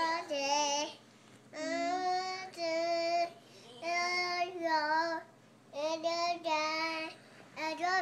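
A one-year-old girl singing held, pitched notes in short phrases, with brief pauses between them.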